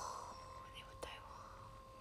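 Faint steady hum of a heated massage cushion's motor running, with a breathy, whisper-like sound and a soft click at the start and another click about a second in.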